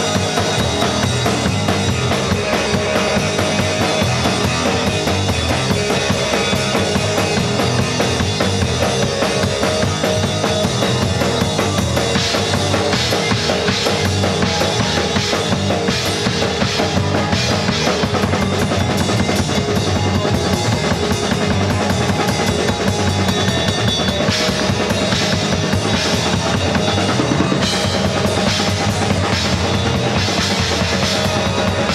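A live rock band playing loud and without a break: a drum kit driving with bass drum and snare, under electric guitars.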